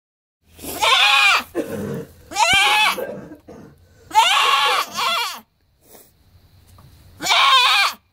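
Dwarf Nubian doe crying out loudly in protest while her hooves are trimmed: five wavering, scream-like bleats, each under a second, the last near the end. The trim is painless and only irritates her.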